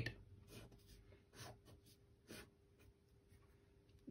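Faint strokes of a pen drawing lines on paper: a few short scratches, roughly a second apart.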